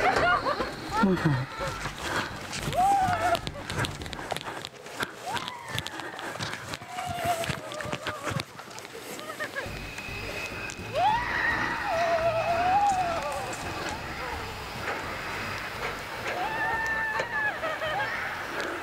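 Alpine coaster sleds running down a steel tube track: a steady rumble with rattles and clicks from the wheels on the rails, and wind on the microphone. Several drawn-out, wavering shrieks from the riders rise above it.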